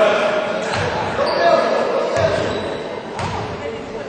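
A basketball bouncing on a gym's hardwood floor, a few thuds about a second apart, with indistinct voices echoing in the hall.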